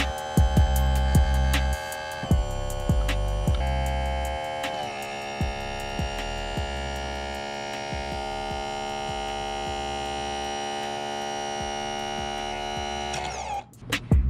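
Electric power trim and tilt pump on an 85 hp Johnson Evinrude outboard running as it tilts the motor, a steady smooth hum with hardly any gurgling left, the sign that the air is nearly bled from the system; it cuts off just before the end. Background music with a beat plays under it, clearest in the first few seconds.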